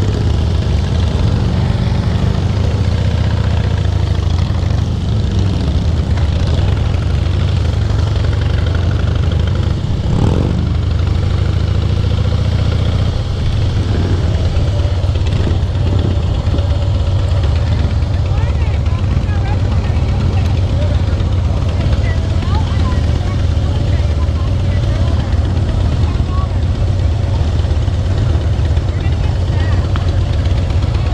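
Harley-Davidson Heritage Softail's V-twin engine falling in revs near the start, then idling steadily with a deep, even sound. The other motorcycles in the group idle alongside it.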